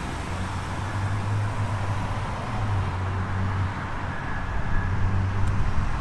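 Steady low rumble of road traffic with an even hiss over it, a low hum swelling slightly and fading.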